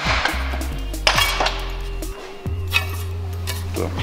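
Steel sheet-metal blank clanking against a manual sheet-metal folding brake as it is set in and handled: a few sharp metallic knocks and rattles, over background music.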